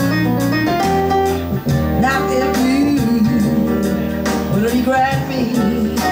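A live jazz band: a woman singing into a microphone with a wavering vibrato, backed by electric bass guitar and keyboard, all amplified through a PA.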